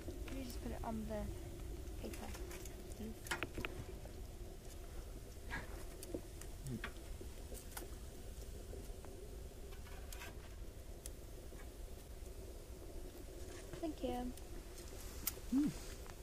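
Scattered light clicks and clinks of a barbecue spatula and plates being handled at a charcoal grill, over a low steady hum. A few brief murmured words are heard near the start and near the end.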